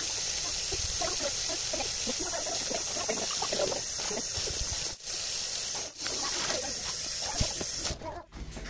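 Kitchen tap water running into a stainless steel sink as a mug is rinsed under the stream: a steady splashing hiss, broken by two brief dips about five and six seconds in.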